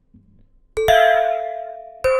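Omnisphere software-synth bell preset ('bell - cakeshop') sounding two notes, struck almost together a little under a second in, ringing on and slowly fading.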